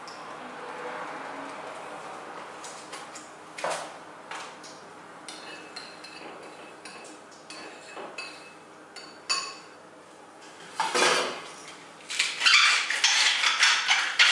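A metal spoon clinks and scrapes against a small ceramic bowl as tomato sauce is stirred in it, with a few sharper knocks. Near the end comes a dense run of rapid crackling clicks as salt is ground over the bowl.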